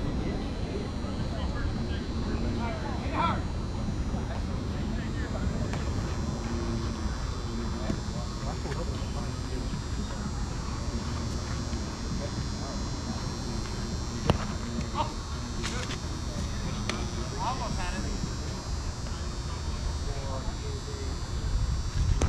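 Softball field ambience: faint scattered calls of players across the field over a steady low rumble, with a single sharp knock about fourteen seconds in.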